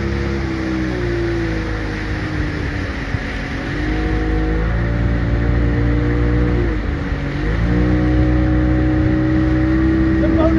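Motorboat engine running under load while towing, its speed dipping and picking up again twice, over the rush of the wake and wind.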